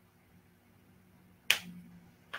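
A single sharp click about one and a half seconds in, with a short fading tail, over faint steady room hum.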